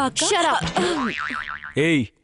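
A voice, then a wavering, wobbling tone lasting about half a second, like a comic 'boing' sound effect.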